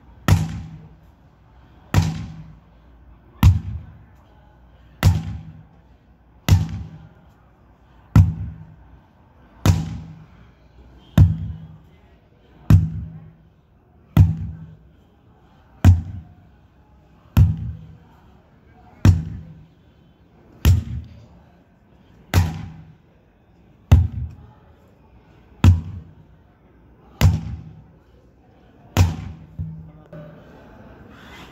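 Sledgehammer striking a large rubber tractor tyre over and over, a loud, sharp thud about every second and a half, nineteen strikes in all.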